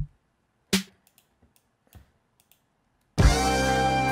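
Drum samples auditioned one at a time from a beat-making program: a loud kick-like hit with a deep low end, a second drum hit under a second later and a faint third, with soft mouse clicks between. About three seconds in, a sampled music loop with steady held tones starts playing loudly.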